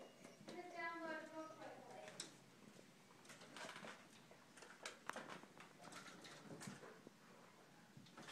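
A Siamese cat gives one faint, drawn-out meow with a wavering pitch about half a second in, followed by a few faint scattered clicks and taps.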